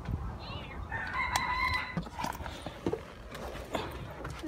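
A rooster crowing once, a held call about a second long starting about a second in, with a few faint clicks around it.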